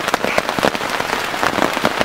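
Heavy rain falling on a tent's fabric: a dense, fast patter of sharp drop impacts close to the microphone.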